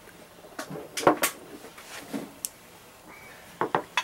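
Beer being sipped from small glasses, with sharp clicks and knocks: a loud cluster about a second in, and two or three more near the end as the glasses are set down on the table.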